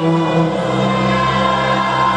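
Live worship music: a congregation singing over long held chords that shift once shortly after the start.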